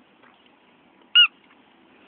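A squeaky hamburger dog toy squeezed once: a single short, loud squeak about a second in.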